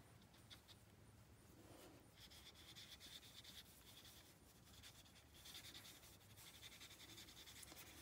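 Faint strokes of a water brush's bristles across cardstock, spreading a wet ink wash.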